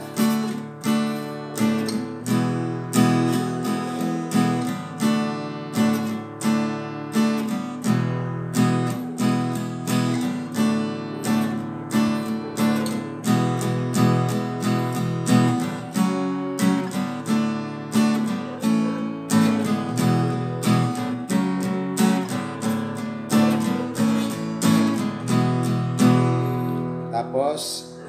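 Acoustic guitar strummed in steady down-strokes only, alternating between D and E major chords, with the two-chord pattern played three times over.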